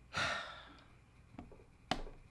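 A man's sigh, one noisy exhale that fades over about half a second, followed by two sharp computer-mouse clicks.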